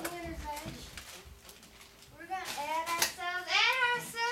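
High-pitched voices speaking, with a sharp click about three seconds in.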